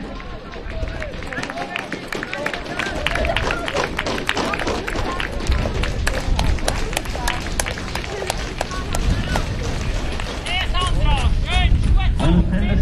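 Footfalls of a pack of middle-distance runners in track spikes on a synthetic track, a rapid run of many clicks as they pass close, mixed with spectators clapping. Voices call out near the end.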